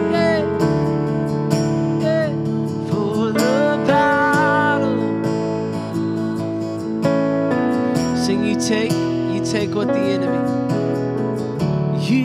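Live worship song: a man singing over a strummed acoustic guitar and held keyboard chords.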